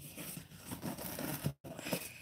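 Knife cutting into a size 3 soccer ball's cover: an irregular, quiet scraping and tearing. The sound drops out for an instant about one and a half seconds in.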